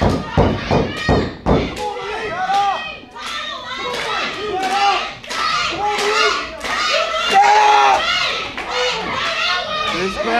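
A few heavy thuds in the first second and a half, then an arena crowd with many high children's voices shouting and cheering over one another.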